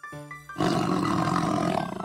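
A lion's roar sound effect: one long roar of about a second and a half, starting about half a second in and cutting off just before the end. Light plucked background music comes before and after it.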